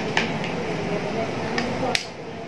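Light sharp clicks and taps of an egg being handled and knocked against a bowl rim to crack it, the sharpest near the end, over faint background voices.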